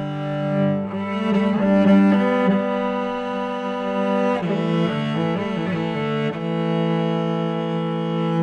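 Solo cello, bowed, playing a slow, lyrical Celtic-style melody in long held notes that change every second or two.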